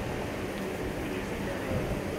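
Steady low rumble and hiss of a ship's machinery and wind on an open deck, with faint voices near the end.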